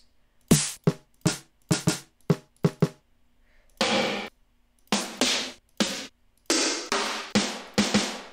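FL Studio's stock drum-machine snare and rim samples, previewed one at a time: over a dozen separate single hits, each a different sound. The first few are short and ringing; from about halfway they turn into longer, noisier snare cracks with hissy tails.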